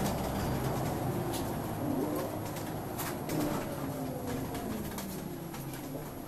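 Wright Solar single-deck bus (Scania chassis) driving, heard from inside the passenger saloon: engine drone with the whine of its ZF automatic gearbox, its tones gliding slowly down in pitch, over light interior rattles and clicks.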